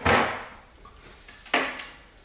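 Two sudden knocks from cardboard packaging being handled and put down, about a second and a half apart. The first is louder and trails off over about half a second.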